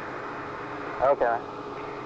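Rolls-Royce Spey jet engine settling at idle in the hush-house test cell, heard muffled through the control-room wall as a steady hum with a faint held tone. A man says "OK" about a second in.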